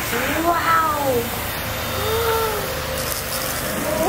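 A baby cooing: two drawn-out, high-pitched sounds that rise and then fall in pitch, the first about half a second in and the second about two seconds in.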